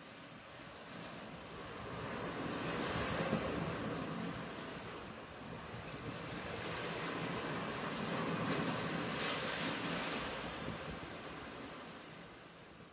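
Ocean surf: two waves swell and wash in about six seconds apart, the sound fading away near the end.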